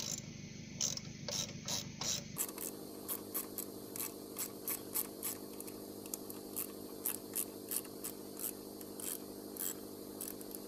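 Ratcheting hand screwdriver driving a wood screw into a timber post, its pawl clicking about three times a second.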